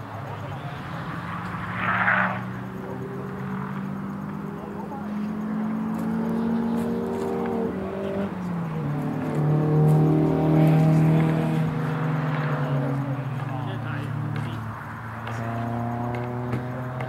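Car engines running on the track, a drone that slowly rises in pitch, drops sharply about eight seconds in, and is loudest a couple of seconds later. A brief rush of noise comes about two seconds in.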